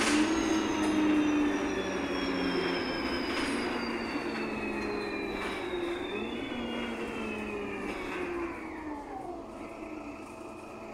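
Interior running noise of a VDL SB200 single-deck bus heard from the saloon. The driveline whine falls slowly in pitch and the noise grows quieter as the bus slows, with a brief rise in pitch about six seconds in.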